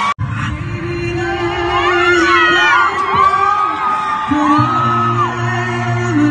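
Live vocal group singing, a high male voice sliding through and holding long high notes over low sustained harmony and bass parts, with audience whoops. The sound cuts out briefly just after the start where two recordings are joined.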